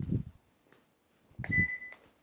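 Two short muffled bumps of handling noise, about a second and a half apart, as the presenter turns a large card sign in his hands. A short steady high beep sounds over the second bump.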